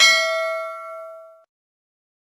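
A notification-bell chime sound effect: a single struck, bell-like ding with a few overtones that rings out, fades, and cuts off about a second and a half in.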